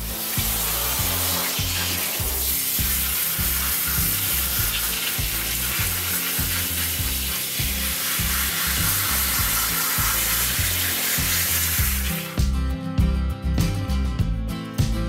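Water spraying steadily from a hose spray nozzle onto a dog's wet coat in a grooming tub, cutting off near the end. Background music with a bass line plays underneath.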